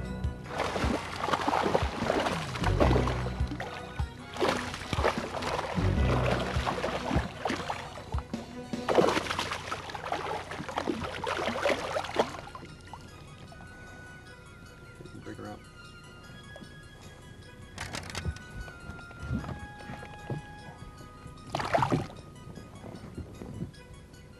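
Background music over a hooked bass splashing and thrashing at the water's surface beside a boat: three long bursts of splashing in the first half, then two short splashes near the end.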